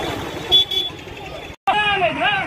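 Street noise of a marching crowd, with a short, loud horn toot about half a second in; after a brief cut, a man's voice takes over.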